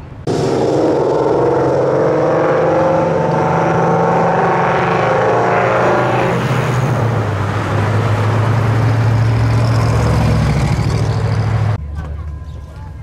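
Classic cars' engines and exhausts as they drive past on the street. A busier engine sound in the first half gives way to a steady low engine drone in the second half. The sound starts and stops abruptly.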